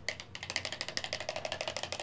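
Rapid, even rattling clicks of small hard objects, about a dozen a second, lasting about two seconds.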